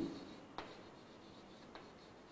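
Chalk writing on a blackboard: faint scratching as letters are drawn, with small taps of the chalk about half a second in and again near the end.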